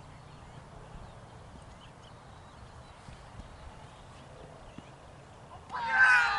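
Low, steady outdoor rumble, then near the end a sudden loud shout from cricket players on the field, falling in pitch.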